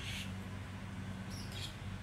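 A steady low hum throughout, with a few short high-pitched squeaks: one right at the start and a pair a little past halfway.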